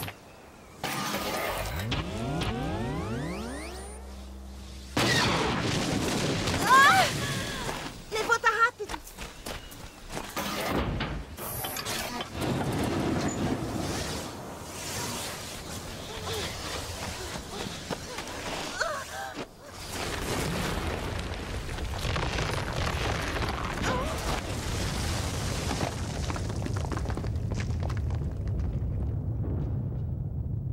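Cartoon sci-fi action sound effects for the Megatank, a rolling metal sphere monster: a stacked rising whine early on, then sharp crashing impacts around seven to nine seconds in. In the last third a steady sandstorm wind noise with a low rumble takes over.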